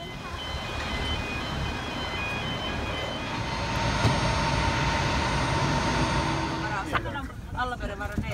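Jet aircraft noise on an airport apron: a steady loud rush with high whining tones. It cuts off abruptly about seven seconds in.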